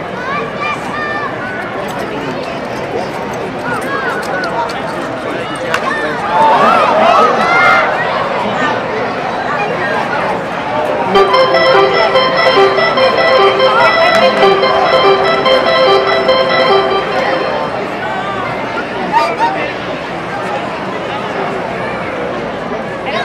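Ballpark crowd chatter throughout, with a loud voice shouting about six seconds in. In the middle a stadium organ plays held notes for about six seconds.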